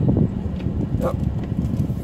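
Nissan Hardbody pickup crawling slowly through loose sand at low throttle, a rough low rumble of engine and tyres as it creeps over a built-up sand lip on the dune, with wind buffeting the microphone.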